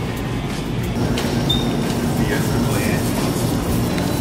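Shopping cart wheels rolling over a store floor: a steady rumble and rattle, with a few faint squeaks in the middle.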